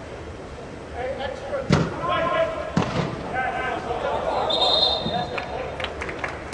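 A soccer ball kicked twice, a second apart, each kick a sharp thud echoing under an air-supported dome, while players shout.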